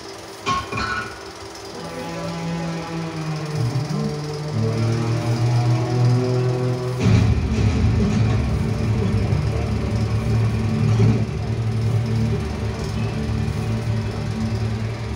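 Indian film soundtrack music played through an open-air cinema's loudspeakers, with a couple of short knocks just after the start. About seven seconds in the music turns suddenly louder and fuller in the low end.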